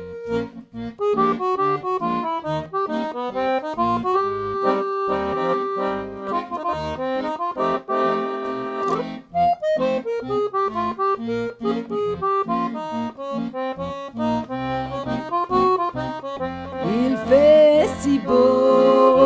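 Weltmeister piano accordion playing an instrumental passage: a moving melody over a rhythmic left-hand bass and chord accompaniment. Near the end a sliding higher tone comes in over it.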